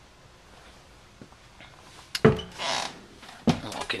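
Footsteps and knocks on bare wooden motorhome entry steps: a sharp thump a little over two seconds in, a short shuffling rustle, then more knocks near the end.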